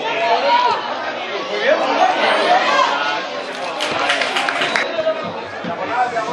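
Spectators' chatter: several people talking at once in overlapping voices, with no words standing out.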